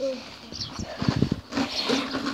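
A child growling like a big cat: a short, rough, rattling growl about a second in, with brief vocal sounds around it.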